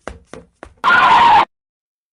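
Cartoon sound effects: quick running footsteps, about four a second, then a loud screech lasting about half a second as the running stops.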